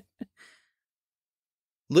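A soft breath out, like a faint sigh, just after a laugh, with a small click just before it; then dead silence until speech starts at the very end.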